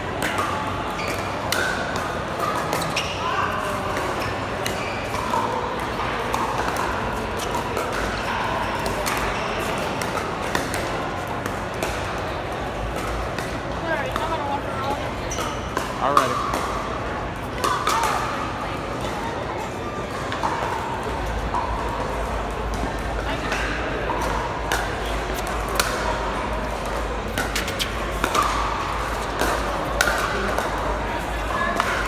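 Pickleball paddles striking a plastic pickleball: repeated sharp hits at irregular intervals, the loudest about sixteen and eighteen seconds in, over a steady background of voices chattering.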